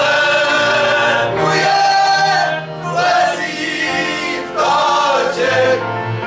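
A group of men singing a verbuňk folk song together, several voices at once, in sustained phrases that break about every second and a half.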